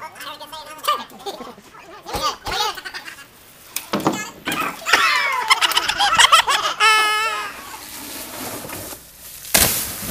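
Young men's voices yelling and laughing, with a few short knocks. Near the end comes a sudden loud burst of noise that runs on as a rushing hiss.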